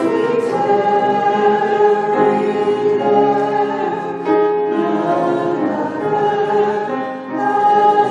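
Three women's voices singing together, with long held notes.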